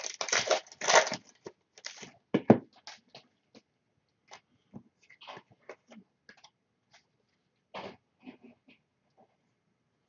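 Trading-card pack wrappers being torn open and crinkled, densest in the first few seconds, then sparse crackles and light clicks as the cards are handled.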